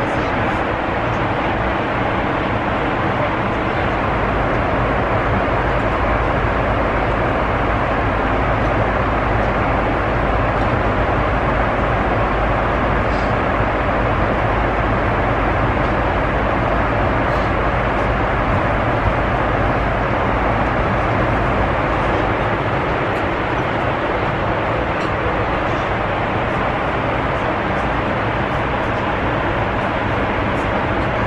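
Steady cabin noise inside a Boeing 747: an even rush with a low hum underneath.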